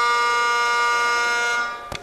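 A steady electronic buzzer tone from the House chamber's roll-call voting system: one held note with many overtones that fades out about a second and a half in. A short click follows near the end.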